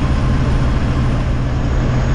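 Steady in-cab drone of a semi-truck rolling down the road: a low engine hum under road noise.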